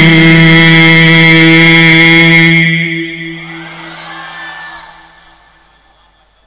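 A man's voice holding the final note of a melodic Quran recitation through a microphone and loudspeakers: one long, steady, chanted tone. It breaks off about two and a half seconds in, and its echo dies away over the next two seconds.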